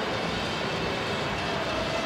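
Steady background hubbub of a busy indoor shopping mall: a constant wash of crowd murmur and building hum.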